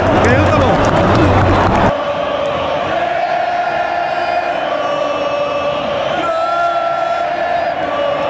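Stadium crowd of football supporters singing a chant together in long held notes. It starts suddenly about two seconds in, after a loud stretch of close voices and crowd noise.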